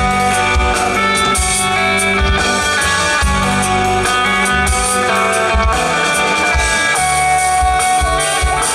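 Live rock band playing an instrumental passage: hollow-body electric guitar over keyboard and a drum kit, with steady kick-drum beats and cymbal crashes.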